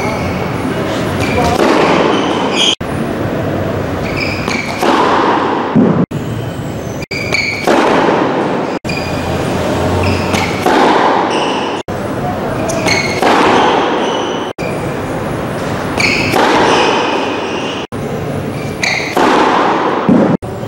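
Tennis ball struck by rackets during play, a hit roughly every three seconds, over a steady loud background noise.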